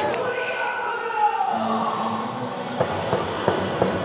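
Short edited-in logo transition sound with a falling tone about a second in, followed by background chatter and a few light knocks near the end.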